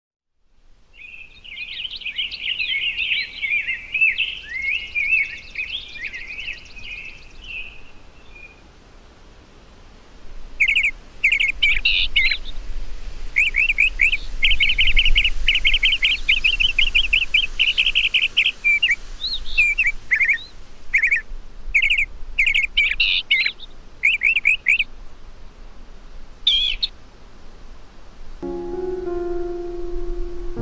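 Songbird singing: a warbling, twittering phrase in the first several seconds, then after a short pause a run of repeated chirps that turns into a rapid trill, followed by separate chirps and one last short burst near the end.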